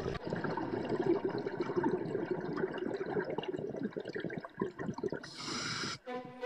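Underwater sound of a scuba diver's regulator: a long, irregular rush of exhaled bubbles, then a brief higher hiss near the end, typical of an inhalation through the regulator.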